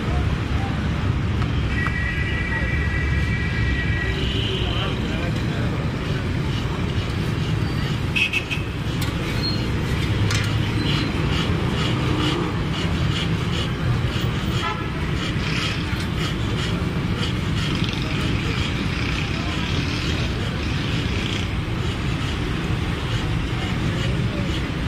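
Street traffic running steadily with a low rumble and background voices. A vehicle horn honks for about two seconds near the start, with shorter horn toots later.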